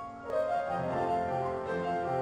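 Four pianos playing an arrangement of spirituals together. About a third of a second in, the playing gets louder and fuller as low bass notes come in.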